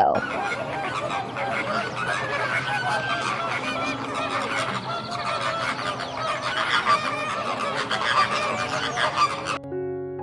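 A flock of flamingos honking and calling, many short calls overlapping at once, cutting off just before the end.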